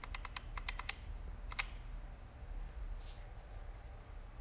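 Computer keyboard typing: a quick run of key clicks in the first second and one more click a little later, then a low steady room hum.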